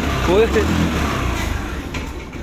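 Small scooter engine running just after being started, a steady low hum that weakens over the last half second.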